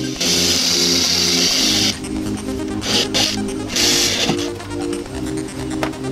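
Electric drill drilling out a stuck pop rivet through a plastic body-kit over-fender, in three bursts: a long one of about two seconds near the start, then two short ones around three and four seconds in. Electronic background music plays throughout.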